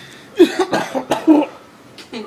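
A person coughing hard four times in quick succession, within about a second, on a mouthful of mayonnaise-filled banana.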